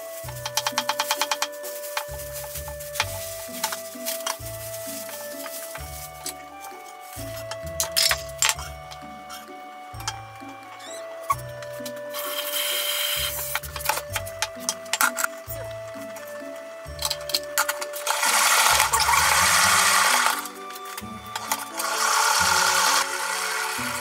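Background music playing throughout. Over it, a knife chops quickly on a wooden cutting board for about a second at the start, followed by scattered knocks. Later come bursts of running tap water as greens are washed, the longest lasting about two seconds.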